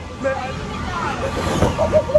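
Shouts and chatter of several people in a large hall, over a steady low hum.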